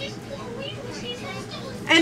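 Faint voices in the background, wavering and indistinct. Close-up speech from a woman begins right at the end.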